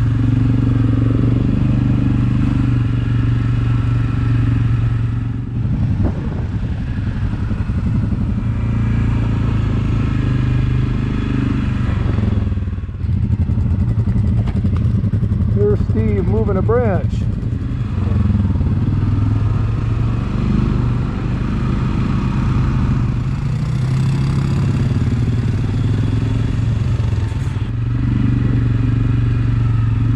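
ATV engine running steadily on the move, its level dipping briefly about five and twelve seconds in.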